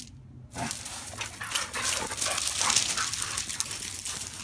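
Two dogs playing rough on pea gravel, their paws scrabbling and crunching the stones as they tussle and then run off.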